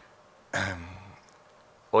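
A man clearing his throat once, briefly, into a podium microphone.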